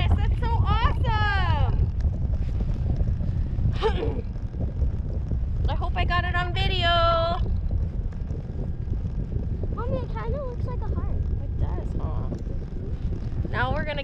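Steady low wind rumble on the microphone of a camera riding a parasail tow bar in flight. Short bursts of high voices cut in over it, the longest a drawn-out call about six seconds in.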